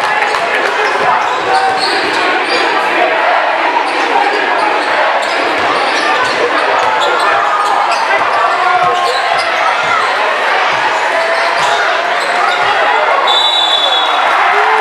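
A basketball dribbled on a hardwood gym floor, thumping repeatedly over the chatter of a crowd in a large gym. Near the end, a referee's whistle blows one short, shrill blast to call a foul.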